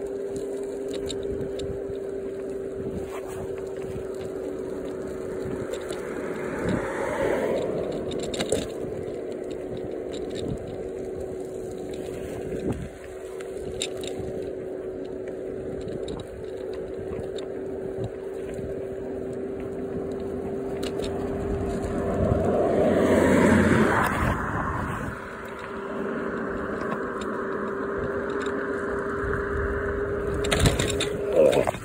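Electric scooter's motor giving a steady whine as it cruises, over tyre and wind noise. Two louder rushing swells, about seven and twenty-three seconds in, as traffic goes by; the whine drops out briefly just after the second.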